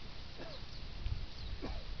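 Faint, thin, high bird calls over a steady hiss, with two short rising calls lower in pitch and a dull bump about a second in.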